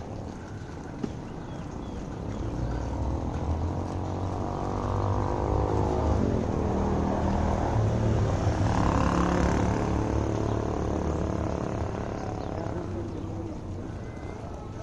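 An engine passing by: a droning motor grows louder over a few seconds, peaks around the middle with its pitch sliding down as it goes past, then fades away near the end.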